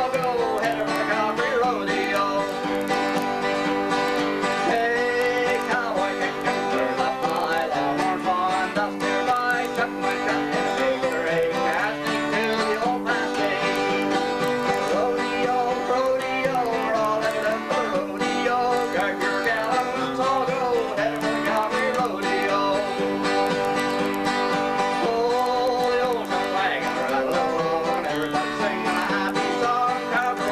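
Two acoustic guitars playing an instrumental country tune together, a steady run of plucked notes carrying a melody with no singing.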